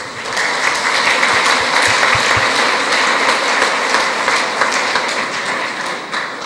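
Audience applauding: a dense patter of many hands clapping that builds within the first second, holds steady, and begins to taper near the end.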